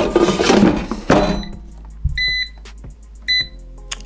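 A noisy handling sound in the first second or so, then an air fryer's touch control panel beeping twice: a longer beep about two seconds in and a short one about a second later, as buttons are pressed to set it.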